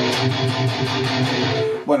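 Electric guitar played through the high-gain distortion channel of the Neural DSP Fortin NTS amp-simulator plugin: heavily distorted chords ringing out, cut off just before the end.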